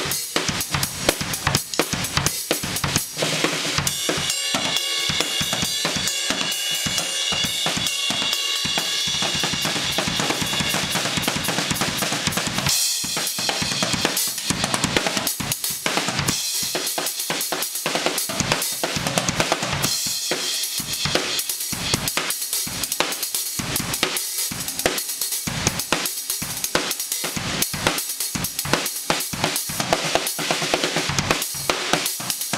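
Drum kit solo: fast, dense strikes on bass drum and snare, with long stretches of ringing cymbals through the first two-thirds.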